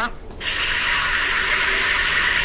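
Steady hiss from a phone's speaker on an open call line while no one on the line is talking.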